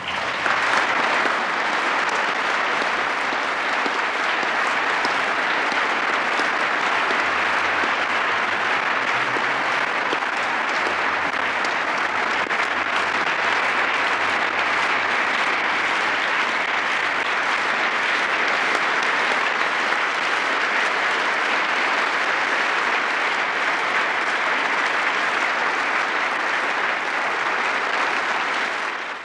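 Large audience applauding steadily for a long stretch.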